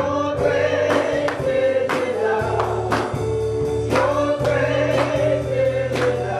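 A live gospel worship song: voices singing over electric keyboard and a drum kit, with a drum and cymbal beat struck about once a second.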